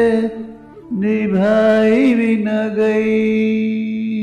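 A man singing long, held notes into a close microphone. A note fades out in the first second, then a new sustained phrase starts about a second in, bending up and back down around the middle.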